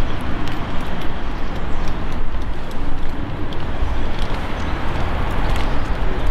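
Steady outdoor street noise with a heavy low rumble.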